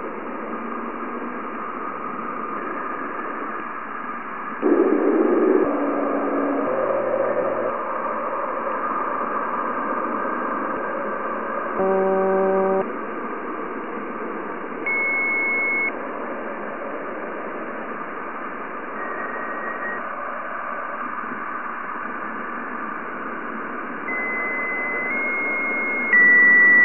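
Plasma waves from Jupiter's ionosphere, recorded by NASA's Juno spacecraft's Waves instrument and slowed about 60 times into audio. A steady hiss carries brief, nearly pure tones now and then, lower in pitch in the first half and higher in the second. The tones follow the electron density, which rises as the spacecraft descends into the ionosphere.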